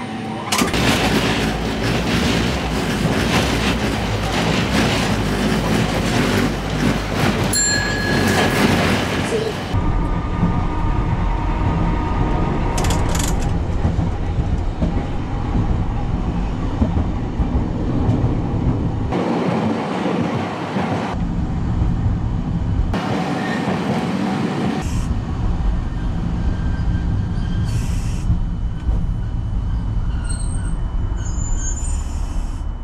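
Streetcar running on its rails, heard from the driver's cab: a steady rumble of wheels on track and the running gear. The first ten seconds or so are louder and hissier, and the rest is a lower, quieter running sound.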